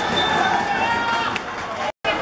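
Several voices of futsal players and onlookers calling out at once across an open court. The sound cuts off abruptly just before the end.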